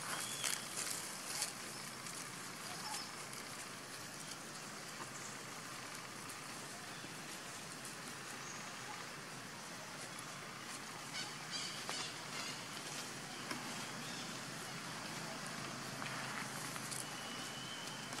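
Outdoor ambience: a steady hiss with light rustling and crackling in grass and dry leaves. The crackles come in the first second or two and again in short clusters later on.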